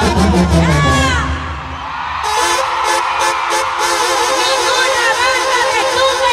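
Live banda music in an instrumental passage: a low tuba bass line, then held brass and clarinet chords, with a quick run of drum and cymbal hits about two seconds in.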